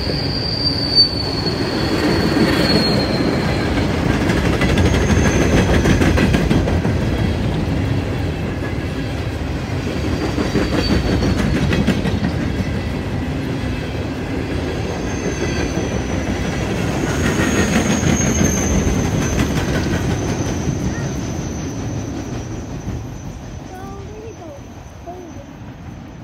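Coal train hopper cars rolling past with a steady rumble of steel wheels on rail. Thin high wheel squeal sounds over the first few seconds and again through the second half. The sound fades near the end as the last cars pull away.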